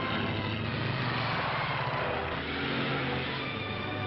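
A car's engine and road noise under orchestral film music; the noise swells about a second in and fades again, as the car is driven fast.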